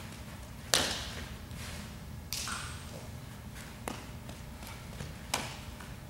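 Four sharp knocks of a softball fielding drill, the loudest about a second in, each echoing briefly in a large indoor hall, over a steady low hum.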